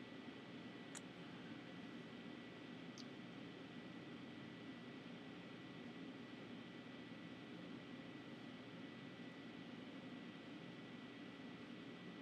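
Near silence: faint steady room hiss with a thin steady high-pitched tone, and two faint small clicks about one and three seconds in.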